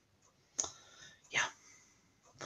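A single sharp click about half a second in, then a short, softly spoken "yeah".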